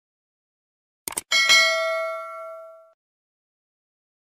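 End-screen button sound effects: a quick double click about a second in, then a bright bell ding that rings on and fades out over about a second and a half, marking the notification-bell button.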